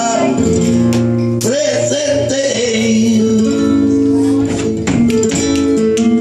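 Live flamenco: a male cantaor sings long, wavering ornamented phrases over flamenco guitar, with palmas (rhythmic hand-clapping) accompanying. The sharp claps come thicker in the second half.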